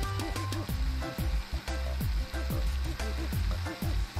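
Countertop blender running, puréeing soaked sea moss (Irish moss) and water into a gel: a steady, hissing churn. Background music with a deep, sliding bass plays over it.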